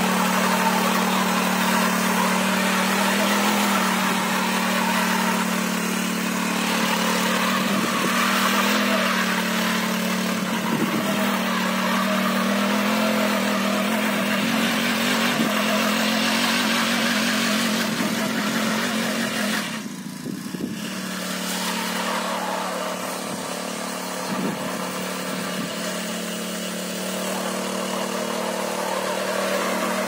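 Small petrol engine of a single-wheel power weeder running steadily under load as it tills the soil between crop rows. Its note dips briefly about two-thirds through and stays a little quieter afterwards.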